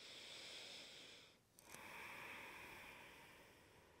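Faint breathing: two long, slow breaths with a short pause between them, the second fading out.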